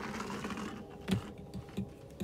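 Window roller blind being handled and set: a brief sliding rustle, then three light clicking knocks in the second half as the blind and its bottom bar are moved.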